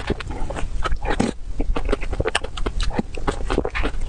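Close-miked eating sounds of soft cream cake: a rapid, irregular run of short wet chewing and lip-smacking clicks, with the metal spoon scraping through the cake.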